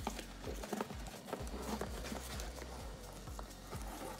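Hands rummaging in a cardboard box: scattered light knocks and rustles of cardboard and packaging being handled.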